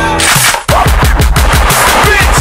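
Rapid machine-gun fire sound effect laid over a hip-hop beat, starting just after a brief drop in the music.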